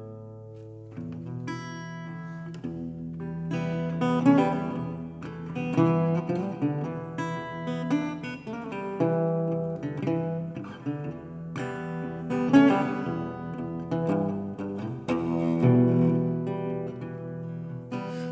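Metal-body resonator guitar playing an instrumental intro: picked notes and chords ringing out over a sustained low note.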